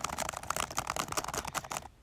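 Fast typing on a laptop keyboard: a rapid, uneven run of key clicks that stops just before the end.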